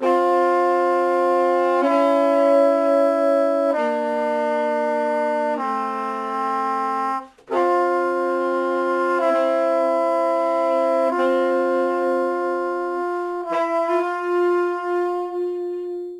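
Brass and saxophone playing slow, held chords that change about every two seconds. There is a short break about seven seconds in, and it ends on one long held note.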